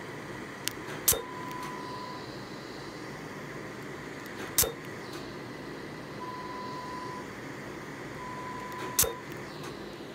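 Medical laser unit running with a steady fan hum, its handpiece firing three sharp snapping pulses on the skin of a mole, about one, four and a half and nine seconds in. A steady high beep from the laser console sounds three times, each about a second long.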